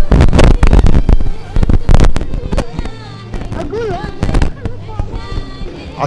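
Audience applause in a hall, loud and uneven for about the first two seconds, then dying away. A voice follows over a low steady hum.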